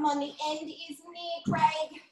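A high-pitched voice holding steady, sung-like notes, with a louder burst about one and a half seconds in.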